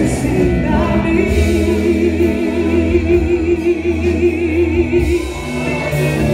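Live gospel worship song through the church's loudspeakers: a woman's voice holds one long note with vibrato from about a second in until near the end, over a steady band backing.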